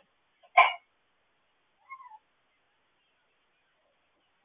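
Puppy giving one sharp yip about half a second in, then a short, faint whimper that rises and falls about two seconds in.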